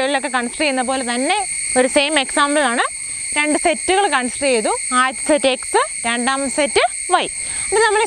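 A woman lecturing without pause, with a steady high-pitched insect chorus droning underneath.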